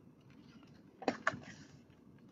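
A picture book's page being turned: two quick papery clicks about a second in, followed by a brief rustle.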